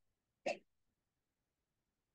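Near silence, broken once about half a second in by a single brief vocal noise.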